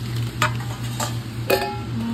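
A steel spoon stirring spice-coated split lentils in a stainless steel bowl, clinking against the bowl three times, the last clink ringing briefly, over a steady low hum.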